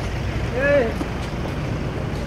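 Busy city street noise: a steady low rumble of traffic and crowd, with one short raised voice, rising then falling in pitch, a little over half a second in.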